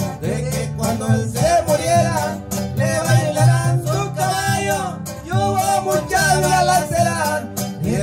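A small string band playing a Mexican song live: upright bass, acoustic guitars and a violin together, with the bass notes steady underneath.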